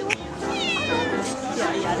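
A domestic cat meowing once about half a second in, a short call that falls in pitch.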